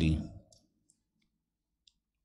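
The end of a man's spoken word trailing off, then near silence broken by two faint clicks, one about half a second in and one near the end.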